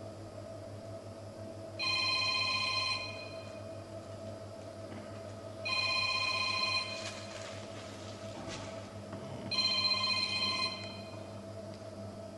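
Mobile phone ringing: three rings, each a chord of a few steady electronic tones lasting about a second, spaced about four seconds apart, over a steady low background hum.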